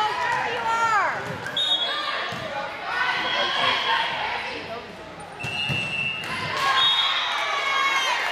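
A volleyball rally in an echoing hardwood-floored gym: players shouting calls, a few sharp smacks of the ball being hit, and brief high squeaks of sneakers on the court floor.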